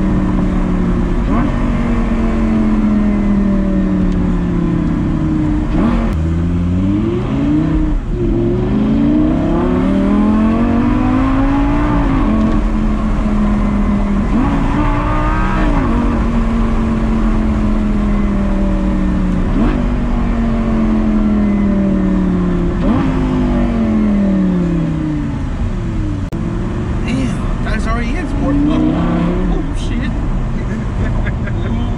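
Lamborghini Gallardo V10 engine heard from inside the cabin while driving. The engine note slowly falls as the car slows, then climbs again under acceleration several times, with quick drops in pitch between the climbs.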